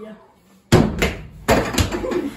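A basketball slammed hard through a small plastic toy hoop: a sharp thud about three-quarters of a second in, then several more knocks as the hoop is hit and the ball bounces on the floor.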